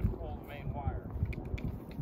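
A man's voice talking at a distance, hard to make out, over wind rumbling on the microphone.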